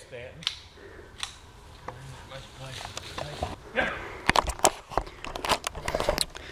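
Scattered crackling and clicking of movement in dry leaf litter and handling noise, with a faint low voice in the middle. A quicker run of sharp clicks and knocks comes near the end.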